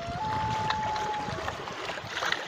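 Ambient water sound: a steady wash of lapping, trickling water with small scattered splashes. About a fifth of a second in, a single clear tone steps up in pitch and holds for about a second.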